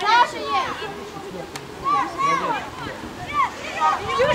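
Indistinct shouts and calls from several players across an open field, in high, strained voices, with no clear words.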